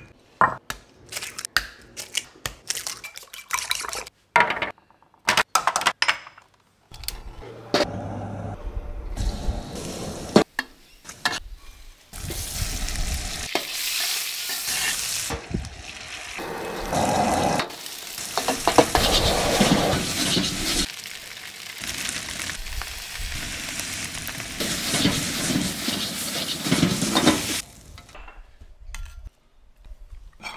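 Sharp taps and knocks of kitchen prep on a wooden board. Then frying in a wok: a loud, steady sizzle with stirring scrapes, beaten eggs going into the hot fat partway through. The sizzle stops suddenly near the end.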